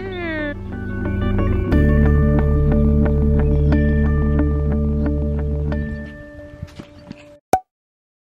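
Background music: gliding, wavering tones at first, then sustained steady chords that fade out, ending with two short clicks near the end.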